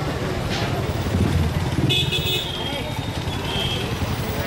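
Busy road traffic with engines running, voices of passers-by, and a vehicle horn honking about halfway through, followed by a shorter second toot.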